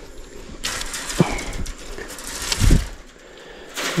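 Scuffling and a few knocks as barbed wire is worked off the hoof of a heifer lying tangled in it, with a louder low thud about two and a half seconds in.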